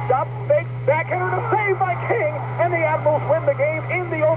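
Radio play-by-play commentary, with a steady low hum underneath.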